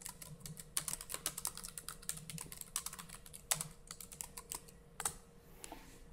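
Typing on a computer keyboard: a quick, uneven run of key clicks that stops about five seconds in.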